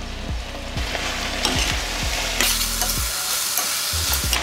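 Frozen green peas tipped into a stainless steel kadai of vegetables frying in oil, which sizzles steadily and grows louder about halfway through. A steel spatula stirs the pan, with scattered scraping clicks against the metal.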